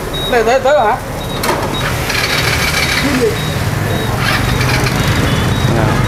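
Steady din of street traffic together with the rumble of a gas-fired wok stove at a street-food stall, with a brief voice in the first second.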